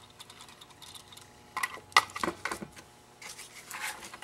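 Plastic instrument enclosure being handled and shifted on a bench: a few light knocks and clicks in the middle, the sharpest about two seconds in, with a faint rustle near the end.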